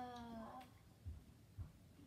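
A girl's voice drawing out a hesitant 'the…' that trails off about half a second in. Then near silence, with two soft low thumps.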